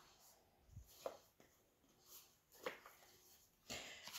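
Near silence: room tone with a few faint, short sounds about a second in and again near three seconds.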